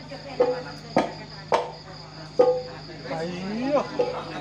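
About four irregular drum strikes, each with a short ringing tone, heard through the PA during a live sound check. A steady high-pitched hum runs underneath, and near the end comes a rising, sliding tone.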